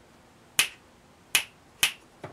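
Three sharp finger snaps: one about half a second in, then two more close together in the second half.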